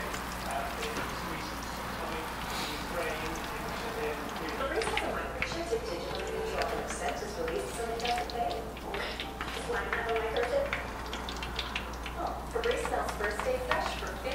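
Dumplings frying in hot oil in a pan, with many short sharp crackles and an occasional click of a fork on the pan as they are turned. A voice without clear words wavers over it from about four seconds in and again near the end.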